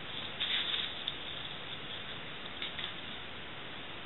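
Faint handling sounds of dissecting instruments and gloved hands on a preserved fetal pig: a few soft, brief clicks and rustles over a steady hiss.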